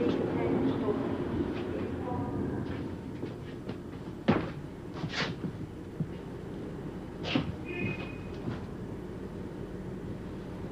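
Low rumble of a train carriage that eases off over the first few seconds. A single sharp knock comes about four seconds in, with a few lighter clicks and a brief high squeal later.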